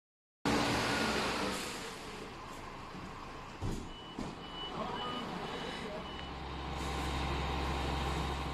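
Fire engine at a vehicle fire: steady street and engine noise with two short thumps, then a run of about five evenly spaced high beeps, two a second, like a vehicle's reversing alarm. A low engine hum grows louder near the end.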